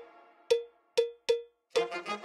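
End-card music sting built from a sharp, pitched cowbell-like hit: three single strikes roughly half a second apart, then a quicker run of hits with lower notes underneath starts near the end.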